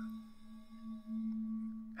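Ambient background music: a steady, low sustained drone tone with fainter higher tones held above it.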